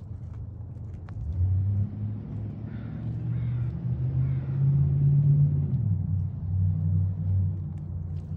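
A low engine rumble, like a motor vehicle passing. It comes in about a second in, grows loudest around the middle with a shift in pitch, and eases off toward the end.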